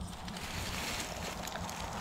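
Continuous rustling and scraping of dry brush and cedar boughs as hunters crawl through cover, with no single loud event standing out.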